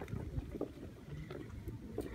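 Quiet outdoor ambience: low wind rumble on the microphone with a few faint soft knocks.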